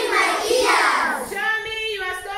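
A class of young schoolchildren singing together in unison, ending on a held note in the second half.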